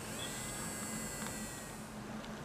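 Small hobby DC motor from the SparkFun Arduino starter kit spinning, giving a faint, steady high-pitched electric whine and buzz that drifts slightly lower in pitch.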